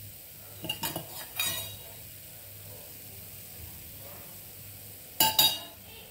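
Rava dosa frying with a faint steady sizzle in oil in a non-stick pan, broken by sharp metal clinks of a utensil: a few about a second in and two louder ones close together near the end.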